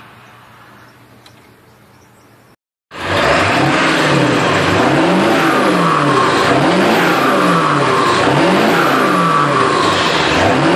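After a faint hum, the sound comes in abruptly about three seconds in: a Ford 7.3 Power Stroke turbo-diesel V8 running loud and steady, its pitch swinging down and up about once a second, with a whistle from the turbocharger. The turbo seems to whistle more with the exhaust back pressure valve deleted.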